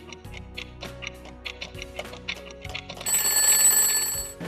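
Clock ticking quickly, about three ticks a second, over background music, then an alarm-clock bell ringing loudly about three seconds in: a time-passing sound effect.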